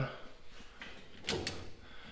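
Faint handling noise with two short light clicks about a second and a half in, as a hand takes hold of a ratchet strap hooked over a steel pickup bed.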